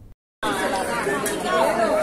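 Crowd chatter: many people talking over one another at once. It starts after a brief gap of dead silence at the opening.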